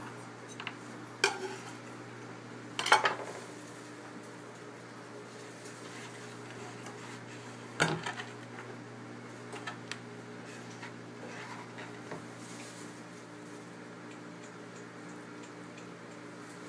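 A chef's knife knocking and scraping on a wooden cutting board as chopped garlic is scooped onto the blade and the knife is set down: a few short knocks, the loudest about three seconds in and another near eight seconds, with long quiet gaps. A steady low hum runs underneath.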